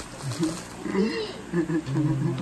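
Wordless voice sounds from a young man who cannot speak: a short high-pitched cry about a second in, then a held low drone near the end. A brief spoken reply is mixed in.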